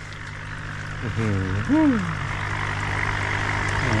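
Air hoses bubbling vigorously in an aerated tub of live blue swimming crabs, a steady rushing bubbling that grows louder, with a steady low hum beneath it.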